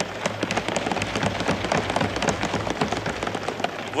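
Assembly members applauding: a dense, steady patter of many hands, with no voice over it.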